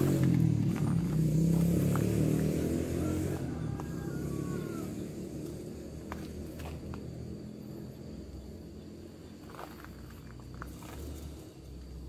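A motorcycle engine running, loud at first and then fading away over the first few seconds, leaving faint outdoor background with a few light clicks.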